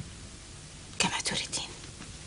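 A short whispered, breathy vocal sound from a woman, about a second in, lasting about half a second over quiet room tone.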